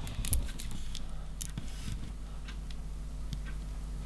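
Light clicks and clinks of heavy metal 1/35 scale tank track links shifting against each other as the track is flexed in the hands, a few scattered clicks mostly in the first two seconds, over a low steady hum.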